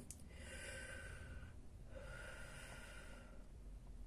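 Faint human breathing: one breath in and one breath out, each lasting about a second and a half with a short pause between.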